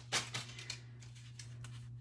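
A few light clicks and rustles in the first second as a thin metal cutting die is picked up and laid on stamped cardstock, then quiet over a steady low hum.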